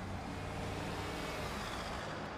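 Cars driving past on a city street: steady traffic noise with a low engine hum.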